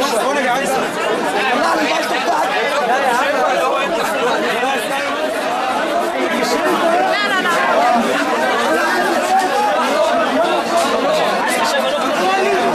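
Crowd chatter: many voices talking over one another at once, steady and loud, with no single speaker standing out.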